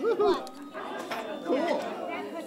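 Indistinct chatter of voices, with two short bursts of talk, one at the start and one about three-quarters through.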